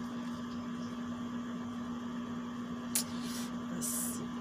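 A steady low electrical hum with a fainter higher tone above it. About three seconds in there is a single click and a short rustle, and another brief rustle near the end, as of a product being handled.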